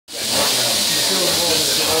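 Hand spray gun hissing steadily as compressed air atomizes a spray-on chrome coating.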